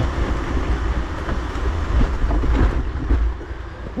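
Mountain bike rolling down a dirt trail: steady wind rumble on the camera microphone over tyre noise on the dirt, with rattling and clicks from the bike over roots and bumps.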